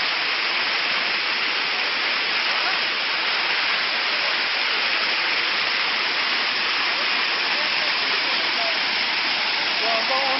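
Rushing water, a steady loud hiss with no let-up.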